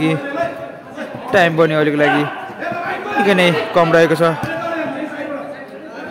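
Speech: a man's low voice commentating on the match in short phrases with pauses.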